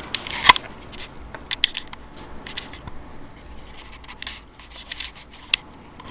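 Handling noise from a camera and a small music player: scattered sharp clicks and short rubbing scrapes, the loudest click about half a second in.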